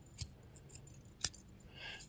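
CRKT Amicus Compact folding knife worked by hand, giving two sharp clicks about a second apart.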